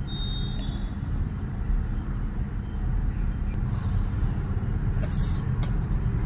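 Steady low background rumble with no distinct events in it.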